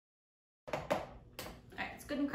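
Dead silence for over half a second, then a few sharp clicks and knocks: an electric hand mixer's beaters tapping against the mixing bowl as the mixer is lifted out, motor not running.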